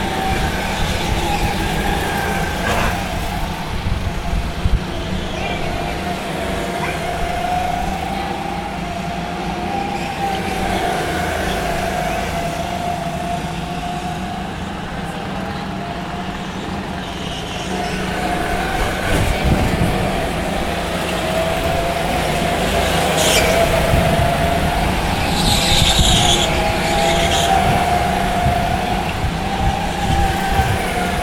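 Several go-kart engines whining as the karts race around the track, their pitch rising and falling as they accelerate and lift off for corners. The sound grows louder in the second half as the karts come closer.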